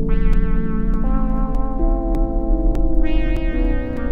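Sequential Prophet Rev2 analog polysynth playing a layered, stacked-voice patch: sustained chords whose notes change several times, with bright attacks near the start and about three seconds in that darken as they ring on. A regular click about twice a second and a steady low hum run underneath.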